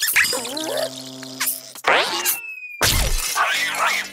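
Cartoon soundtrack: music with comic sound effects, including a sudden loud crash about three seconds in, and a cartoon character's cry near the end.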